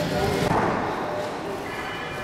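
Indistinct background voices and the general noise of a large indoor museum hall.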